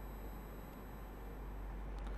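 Quiet room tone: a steady low electrical hum and faint hiss, with no distinct sound events.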